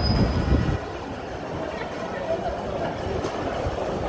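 Indistinct chatter of a small crowd over a steady low rumble, with a heavier rumble in the first second or so.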